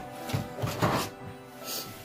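Electronic keyboard playing music with steady held notes, with a few soft knocks in the first second as the keyboard is handled and set down on the bed.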